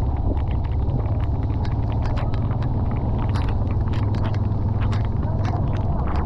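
Heavy rain while a vehicle drives through it: a steady low rumble of engine and wind under the hiss of the downpour, with frequent sharp ticks of raindrops striking close to the microphone.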